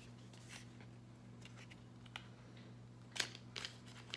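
Faint clicks and light rustles of a small cardboard lipstick box being handled and opened, with a short cluster of louder clicks about three seconds in.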